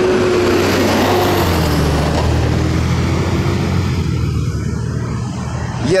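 Road traffic passing close by on a busy multi-lane road: engine rumble and tyre noise from cars, swelling in the first couple of seconds and easing off toward the end.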